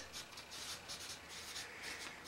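Felt-tip marker writing on flip-chart paper: a faint run of short, high-pitched scratching strokes.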